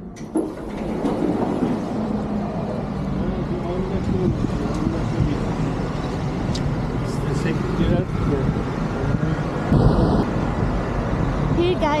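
Road traffic with passing cars and a bus, and voices in the background. A short beep about ten seconds in.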